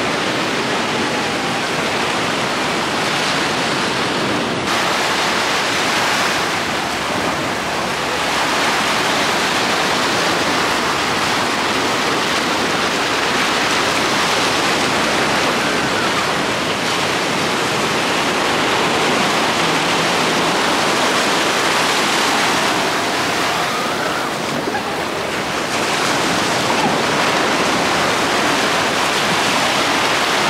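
Ocean surf breaking and washing up the shore close by: a steady rushing hiss that swells and eases slightly as the waves come in.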